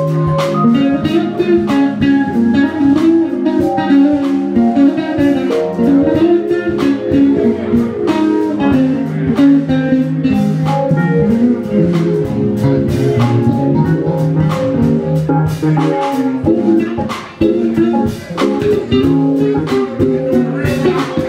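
Live jazz-funk band playing, with an electric bass running busy, shifting lines up front over a drum kit. There is a brief drop in the playing about 17 seconds in.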